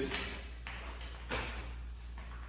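Shoe molding pieces handled on the floor: one brief soft knock about a second and a half in and a fainter one earlier, over a low steady hum.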